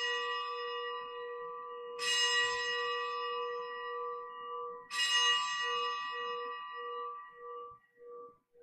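Consecration bell rung at the elevation of the chalice during Mass. The bell is struck twice, about three seconds apart, and each stroke rings on and slowly fades, its low hum pulsing as it dies away. The ringing of an earlier stroke is still sounding at the start.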